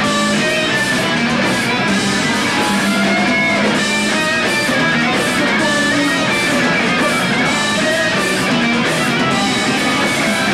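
Live rock band playing loud, with electric guitars strumming over a drum kit.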